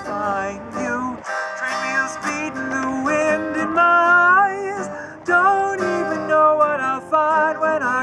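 Acoustic guitar and ukulele strummed together with a singing voice, a folk song played live. The low chords drop out briefly about a second in before the strumming carries on.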